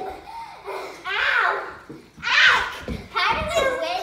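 Children's voices shouting and squealing in short high-pitched calls, about one a second, as they wrestle over scarves in a tug-of-war, with a low thump a little before the third second.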